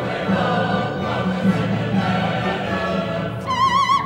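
Opera chorus and orchestra singing together in a dense, many-voiced passage over a low pulsing accompaniment. Near the end a solo soprano enters on a high note with a wide vibrato.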